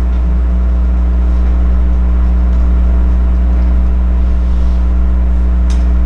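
Steady, loud, low electrical hum with a buzzing stack of overtones, unchanging throughout.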